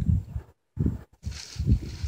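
Wind buffeting the microphone in uneven gusts, with the sound cutting out completely twice for a moment.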